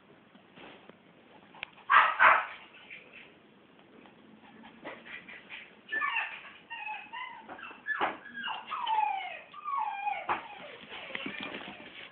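Maltese puppy whimpering: a run of high, thin whines in the second half, several of them sliding down in pitch. About two seconds in there are two loud, rough bursts, the loudest sounds in the stretch.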